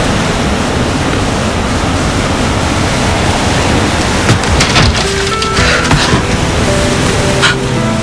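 Steady rush of running shower water, with soft sustained background music notes coming in past the middle and a few light clicks.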